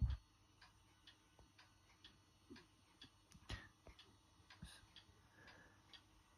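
Near silence: quiet room tone with faint light ticks, roughly two a second.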